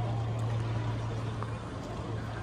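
Outdoor city ambience: an even wash of background noise over a steady low hum.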